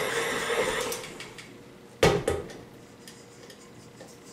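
Tilt-head stand mixer motor running steadily, then winding down and stopping about a second in. About two seconds in comes a single sharp clunk as the mixer head is tilted up.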